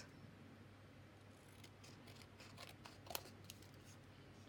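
Scissors snipping white cardstock, cutting out a tag shape: a string of faint, quick snips, mostly in the second half, with one louder cut about three seconds in.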